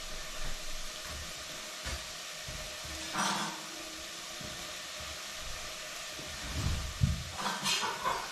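Food frying in fat in a saucepan on an electric hot plate, a steady sizzle. A few low thumps come near the end.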